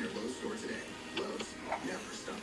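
Soft, faint voice sounds, with a couple of brief sharper sounds in the second half.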